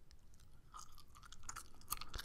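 Chewing gum close to a microphone: soft, wet mouth clicks and smacks. It is quiet at first and the clicks come more often in the second half.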